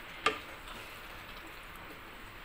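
A wooden spatula knocks once, sharply, against a stainless steel pan about a quarter second in, over the faint steady hiss of chicken simmering in its yogurt sauce.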